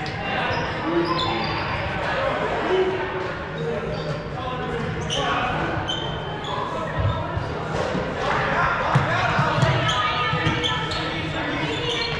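Sneakers squeaking and footsteps on a hardwood gym floor, with players' voices calling, echoing in a large gym.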